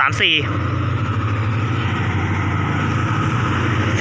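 Diesel locomotive engine running with a steady low drone at a railway station.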